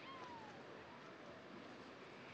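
A single faint animal call, about half a second long, falling in pitch, over a steady low hiss of background ambience.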